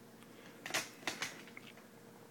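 A few short, soft scratching and rustling noises from a pen and a sheet of paper being handled, the clearest a little under a second in, then fainter ticks.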